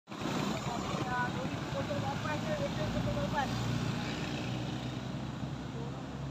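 A motor vehicle engine idling close by with a steady low hum that grows stronger about three and a half seconds in, over general roadside traffic noise, with voices in the background during the first half.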